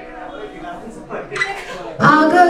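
A quiet gap between sung lines: the steel-string acoustic guitar sounds softly, with a few short, light clicks past the middle.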